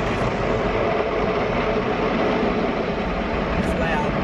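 Automatic car wash working over the car, heard from inside the cabin: a steady rushing noise of water spray and wash machinery on the body and windows.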